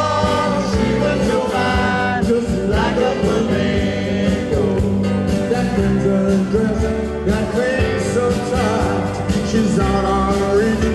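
Live rock and roll band playing a song on stage, with a man singing lead into the microphone over guitar, keyboards and drums, picked up by a camcorder in the audience.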